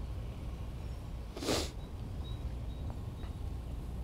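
Outdoor ambience: a low steady rumble, with one short hissing noise about a second and a half in and a few faint high peeps after it.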